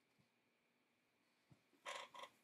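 Near silence: room tone, with a couple of faint clicks and a brief soft noise just before the end.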